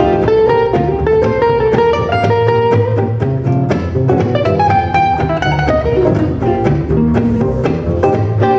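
Gypsy jazz (jazz manouche) played live by two acoustic guitars and a double bass: quick guitar melody lines over strummed rhythm guitar and a walking bass line.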